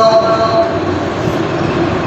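The end of a man's chanted prayer recitation fades out just after the start, and a steady, loud rushing noise, like hiss or room rumble, fills the pause between phrases.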